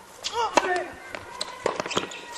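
Tennis racket hitting the ball on a serve, then several more sharp pops of racket hits and ball bounces as the doubles point is played out.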